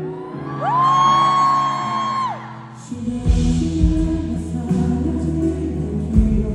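Live pop song with singing over acoustic guitar. A long high vocal note is held for about a second and a half near the start. The drums and bass come in about halfway through.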